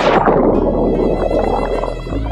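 Churning water and bubbles from a jump into the sea, fading over the first second, under background music with bowed strings.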